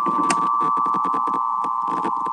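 AN/WRR-3A Navy tube radio receiver's speaker giving a steady whistle with a rapid, irregular crackle of static over it.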